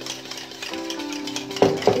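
Background music with held notes, over the light clicking of a wire balloon whisk against a steel bowl as cream is hand-whipped, with two louder knocks near the end.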